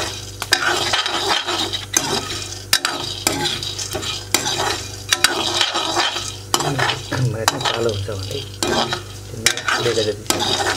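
Metal spoon stirring maize kernels as they dry-roast in an iron kadai: the spoon scrapes and knocks the pan and the kernels rattle, with frequent sharp clicks over a light sizzle.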